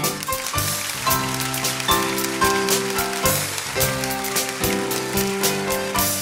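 Live band playing a steady instrumental vamp: sustained chords that change about once a second, with regular drum and cymbal strokes over them.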